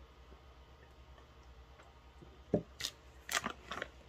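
Very quiet room with a steady low hum. Then, from about two and a half seconds in, a handful of short clicks and knocks as objects are handled, likely the cup being set down and a packaged item being picked up.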